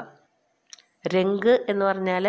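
A woman speaking in drawn-out, sing-song words after a short pause, with one soft click during the pause.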